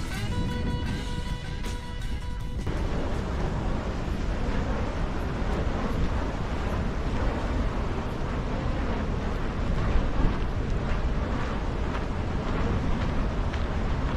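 Background guitar music ends about two and a half seconds in. After that comes a steady, heavy rumble of strong wind buffeting the microphone.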